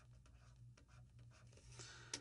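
Near silence: faint strokes and light taps of a stylus writing on a drawing tablet, over a low steady hum.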